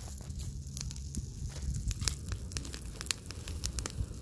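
Brush and pine-stump bonfire catching hold, crackling with many quick sharp pops over a low steady rumble of flame.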